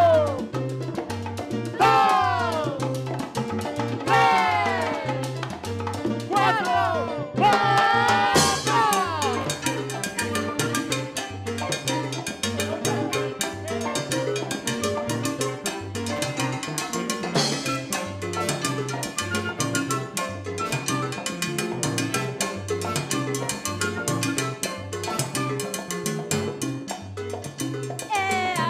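Live salsa band playing: an electric bass repeats its pattern under congas and timbales. Several falling pitch slides sound in the first eight seconds, then the percussion settles into a dense, steady groove.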